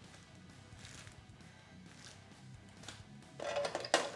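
Faint background music under a pause in the talk.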